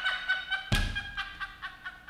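People laughing hard in quick, pitched pulses that gradually die down, with a single thump about two-thirds of a second in.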